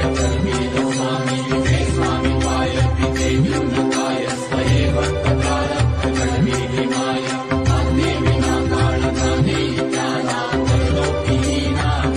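Indian devotional music: a mantra chanted over a steady drone and a low repeating beat, the bass dropping out briefly every few seconds.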